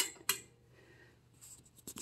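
Two sharp clicks about a third of a second apart as a table lamp is handled and switched on, followed by faint handling sounds near the end.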